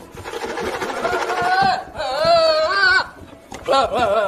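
A young goat bleating: three long, quavering bleats, the second and third louder than the first.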